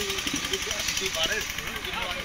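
Indistinct speech from a talk, with a fast, even low rattle running underneath it.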